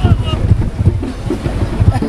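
Wind buffeting the microphone in loud, uneven low rumbles, with people's voices talking over it.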